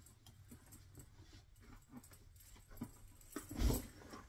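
Small rustles and knocks as a person moves about a padded leather office chair, then a dull thump near the end as he sits down in it.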